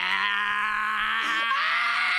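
One long, steady yell held on a single pitch by a person's voice.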